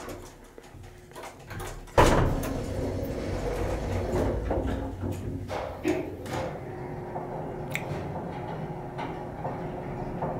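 Antique Otis traction elevator starting off with a sudden clunk about two seconds in, then the car travelling with a steady low hum and ride noise. A few sharp clicks sound during the run.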